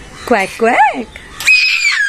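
A young child's voice: two short high calls, then a long, very high-pitched squeal starting about one and a half seconds in and sliding down in pitch.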